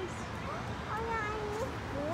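A child's high voice making drawn-out, wordless vocal sounds with sliding pitch, including one long held note about a second in.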